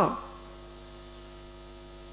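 Steady electrical mains hum from the microphone and sound system: a stack of steady low tones under a faint hiss, as the voice before it dies away in the first moment.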